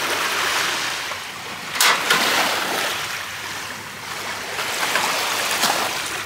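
Waves washing on a pebble shore in the background, with wind on the microphone. About two seconds in comes a sharp click, the piezo igniter of a portable butane camping stove as its knob is turned, and a fainter knock near the end.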